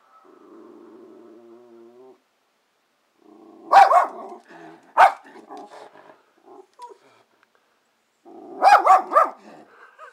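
Schnauzer growling in a drawn-out low tone, then barking sharply: once about four seconds in, again a second later, and a quick burst of three or four barks near the end. She is agitated at a bird just outside the window.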